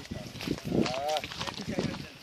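People's voices in brief talk, mixed with a scatter of sharp footfalls and knocks from a group walking on a stony, dry-leaf-covered trail.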